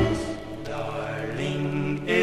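1960 doo-wop recording at a break: the drum beat stops and the vocal group holds a soft, sustained harmony chord, moving to a new held chord about a second and a half in.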